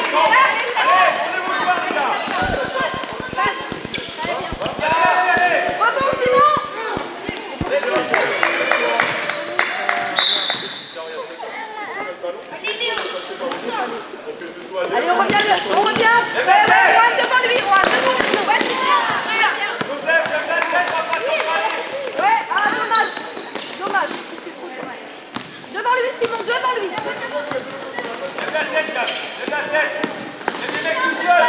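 Basketball game in a gym: a basketball bouncing on the court amid indistinct shouts and calls from players, coaches and spectators, all echoing in a large hall.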